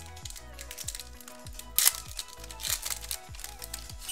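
Foil trading card pack wrapper crinkling as it is handled and pulled open by hand, with a sharp crackle just under two seconds in and another near three seconds, over background music with a steady beat.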